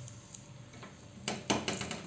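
A few light clicks and taps as a rolled roti is laid onto a hot tawa by hand and patted flat. The clicks start after a quiet first second.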